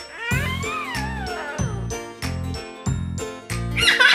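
Background music with a steady beat. Over it, just after the start, comes one drawn-out animal cry that falls in pitch over about a second.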